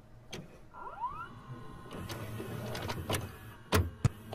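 VHS tape-deck sound effect: a click, then a small motor whirring up in pitch about a second in and running on steadily, with two more clicks near the end.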